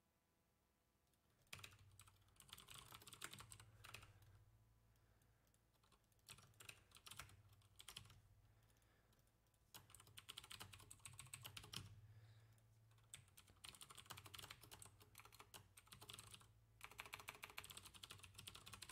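Computer keyboard typing, faint, in quick runs of keystrokes with short pauses between them, starting about a second and a half in.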